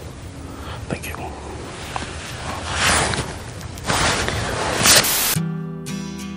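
Breathy hissing noises, two of them louder, then acoustic guitar strumming starts suddenly about five seconds in.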